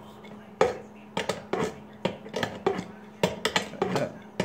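Steel wrenches clinking against each other and against a compression fitting as it is tightened on a transfer case. The clicks and taps are irregular and come quicker near the end, over a steady faint hum.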